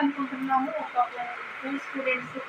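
Only speech: a person talking, with short pauses between phrases.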